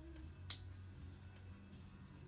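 Quiet room with a faint steady low hum and a single sharp click about half a second in.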